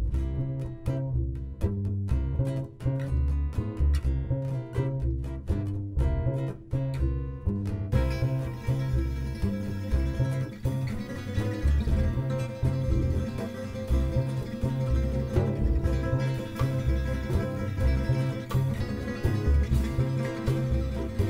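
Gypsy jazz instrumental. An upright bass is played pizzicato with sparse plucked notes. About eight seconds in, the full band comes in with steady acoustic guitar strumming over the bass.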